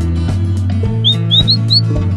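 Background music with a bass line and a steady beat, over which four short rising bird chirps sound in quick succession in the second half.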